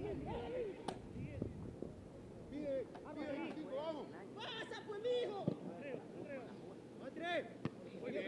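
Shouts and calls of several players across an open football pitch, voices overlapping and rising and falling. Two sharp knocks stand out, one about a second in and one near the end.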